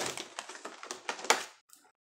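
Handling noises: a run of small clicks and knocks as items are picked up and moved, the sharpest about a second and a half in, then the noise stops.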